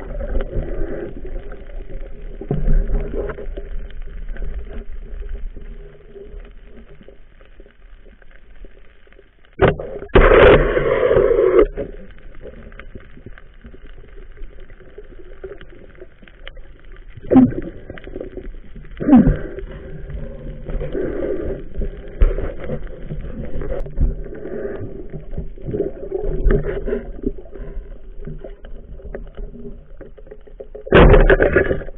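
Muffled underwater noise picked up through a diving camera's housing: water movement and bubbling. About ten seconds in there is a sharp click followed by a loud rush lasting under two seconds, and later two sharp knocks with short falling tones.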